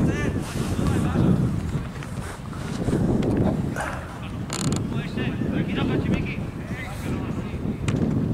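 Wind buffeting the camera microphone in a steady low rumble, with faint shouts from players on the pitch coming and going.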